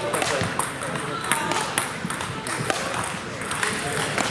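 Table tennis balls clicking off tables and bats at irregular intervals, from rallies on neighbouring tables, over a hum of background voices.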